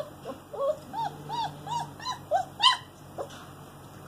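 German Shepherd puppy crying in a quick run of short, high, rising-and-falling whimpers, about three a second, stopping about three seconds in: a puppy howling for attention.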